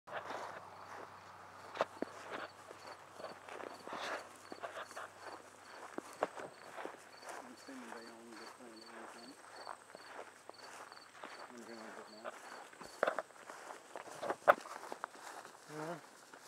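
Footsteps walking through short grass, with irregular rustles and knocks from a handheld camera and a few sharper bumps near the end. A faint high ticking repeats about twice a second through most of it.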